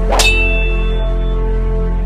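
A single metallic clang sound effect about a quarter second in, ringing on for about a second, over steady intro music with a deep sustained bass.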